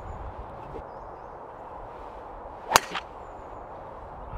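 Golf driver striking a ball off the tee: a single sharp crack about three-quarters of the way through.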